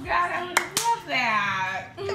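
Two sharp slaps, like hands clapping or smacking a basketball, then a long drawn-out vocal call that falls in pitch at the end.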